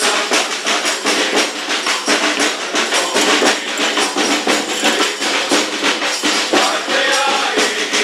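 Group of carolers singing together to a steady beat from a hand-held bass drum and a snare drum, with shaken, jingling percussion filling out the rhythm.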